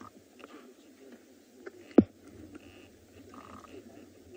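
Faint low sounds from a warthog caught by a leopard, with one sharp knock about two seconds in.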